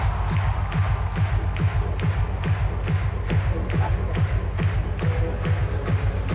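Electronic dance music played loudly over an arena sound system, with a steady, fast kick-drum beat, recorded from the stands.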